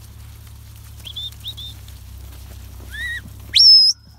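A sheepdog handler's whistle command to a working border collie: a loud whistle that sweeps sharply up and holds a high note briefly near the end, after a few short, quieter high chirps a little over a second in.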